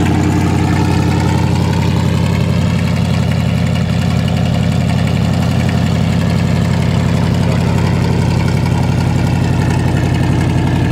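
1981 Chevrolet K10 4x4 pickup's engine idling steadily, heard from the rear at the tailpipe.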